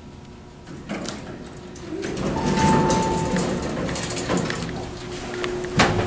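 Elevator arriving: a knock about a second in, then GAL center-opening doors sliding open, with a single electronic chime tone held for about a second. Knocks of footsteps follow near the end.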